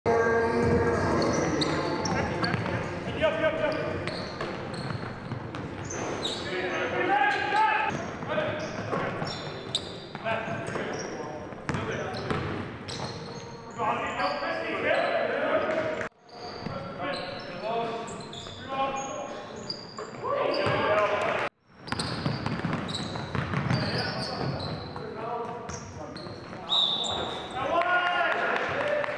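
Live sound of an indoor basketball game in a reverberant gym: a ball bouncing on the hardwood, sharp short impacts, and players' voices calling out. The sound cuts out abruptly twice, after about 16 and 21 seconds, where the footage is edited.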